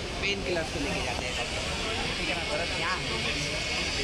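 Indistinct voices of people talking over a steady background rumble.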